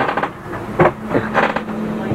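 A man's voice in indistinct, broken-up talk, with a steady low hum coming in under it a little way in.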